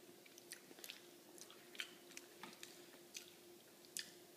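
A baby chewing food with soft, scattered wet clicks and smacks of the mouth, over a faint steady hum.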